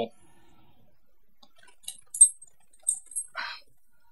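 Quiet room tone, then from about two seconds in a few short, high-pitched clicks, one of them loud, followed by a brief hiss.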